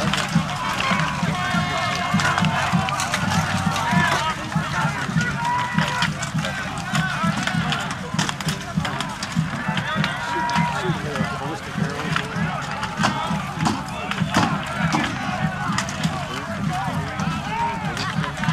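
Battle din of a large armoured melee: many voices shouting at once over a steady clatter of rattan weapons striking shields and armour.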